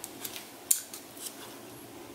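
Clear plastic packaging handled in the hands: a few short, sharp crinkles and clicks, the loudest about two-thirds of a second in.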